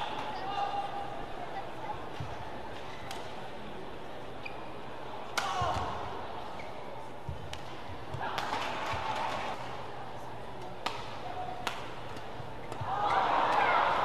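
Badminton rally in an indoor arena: a shuttlecock struck by rackets with several sharp, widely spaced hits over a steady murmur of the crowd. Near the end the crowd noise swells into cheering as a point is won.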